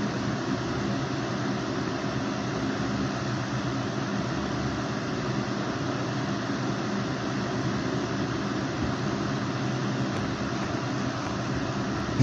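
Steady background hum with hiss, unchanging throughout: a machine such as a fan or air conditioner running in the room.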